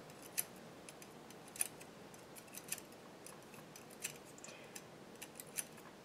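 Faint, small metallic clicks at irregular intervals as latch needles are pulled up one at a time in the slotted cylinder of a Tru-Knit circular sock machine, every other needle being raised to set up for ribbing.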